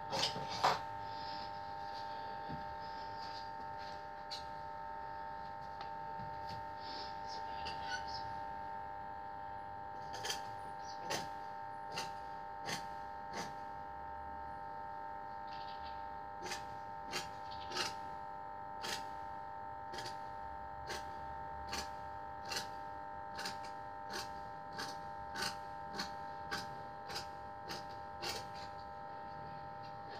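A steady electrical hum with a few faint, irregular clicks, which come about once a second in the second half.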